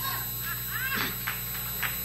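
Steady electrical mains hum, with a faint, brief voice about a second in.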